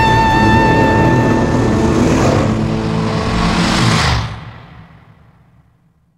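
Ending of a rock song: a held electric guitar note over the band, then a dense noisy swell that stops abruptly about four seconds in and dies away to silence.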